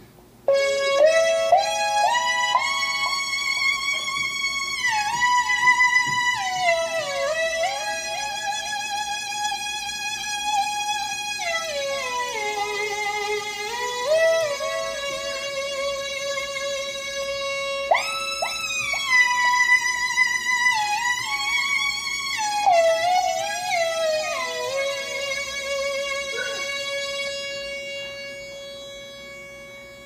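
Teenage Engineering OP-1 synthesizer playing held notes whose pitch slides smoothly up and down, bent by tilting a Flip accelerometer sensor that feeds the OP-1's pitch through the Oplab's CV input. The sound starts about half a second in and fades away over the last few seconds.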